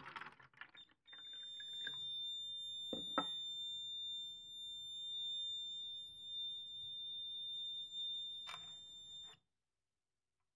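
Piezo buzzer of a simple one-transistor water level alarm sounding one steady high-pitched tone, set off by water bridging the two probe wires. There are a couple of clicks about three seconds in. The tone cuts off suddenly near the end as a probe wire is lifted out of the water.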